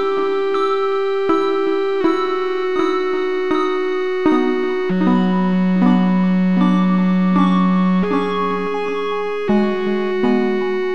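Electronic music of sustained keyboard-like synthesized tones, a new note or chord starting about every second, with a low held note entering about halfway through.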